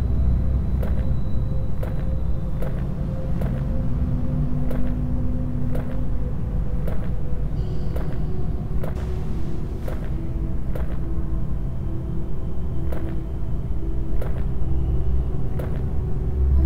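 Eerie horror-film background score: a low rumbling drone under held tones, with a steady tick about every two-thirds of a second.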